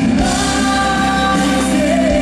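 A live gospel band playing at full volume, with a woman singing lead over backing voices, violin, electric guitar and keyboard.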